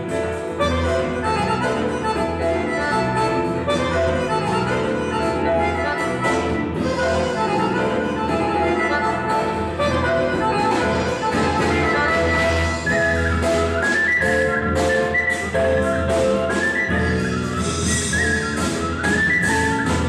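Live band music: a steady groove on bass guitar, drum kit and hand drum, with a high, ornamented melody on a shvi, the Armenian wooden fipple flute, coming in about halfway.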